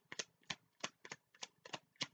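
A tarot deck being shuffled by hand: a quick, uneven series of short card slaps, about four a second.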